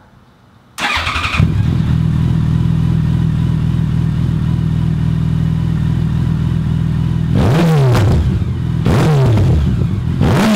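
A 2014 Yamaha FJR1300's inline-four engine, breathing through Yoshimura R77 slip-on exhausts with the baffles removed, starts about a second in and settles into a steady idle. It then gets two quick throttle blips near the end, each rising and falling in pitch. The sound is noticeably fuller and deeper and significantly louder, and it resonates in the garage.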